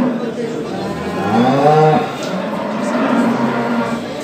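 Cattle mooing. About a second in comes a call that rises and falls in pitch, followed by a longer, steady low moo.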